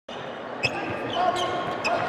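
Basketball bouncing on a hardwood court, several sharp bounces, over the steady background murmur of an arena.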